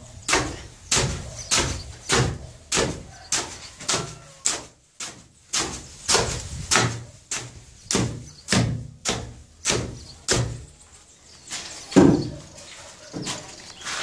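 Steel hoe blade scraping and chopping through a pile of damp sand-and-cement subfloor mortar on a concrete floor, mixing it in steady strokes about two a second. There is a brief pause about five seconds in, and near the end the strokes thin out, with one louder hit.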